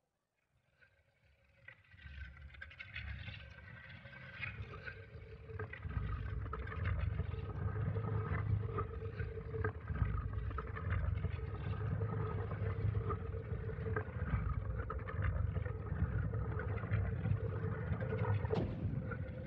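A low, steady rumble with a held droning tone, played over the theatre's sound system, fades in from silence over the first few seconds and then holds steady.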